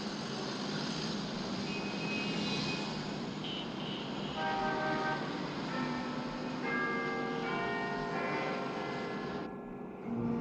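Clock-tower chime bells ringing a run of separate notes, a new bell about every second from about four seconds in, each ringing on over a steady background noise.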